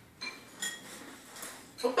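Metal spoons clinking lightly against ceramic cereal bowls, a few short clinks, one with a brief ringing tone, as dry cereal is scooped up.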